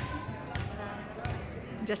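Two dull knocks, about half a second and just over a second in, over faint background voices; a woman starts speaking right at the end.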